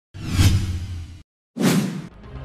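Two whoosh sound effects from an animated news-programme title intro, each a rushing sweep over a deep low rumble, with a short silent break between them.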